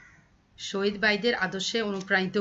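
A woman's voice speaking in Bengali that stops briefly at the start and resumes after about two-thirds of a second.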